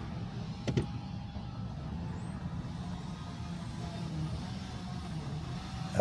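Steady low engine and road rumble heard from inside a vehicle moving slowly, with one short knock under a second in.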